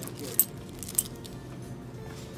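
Two short, sharp clicks about half a second apart, over a steady background of music and low murmur.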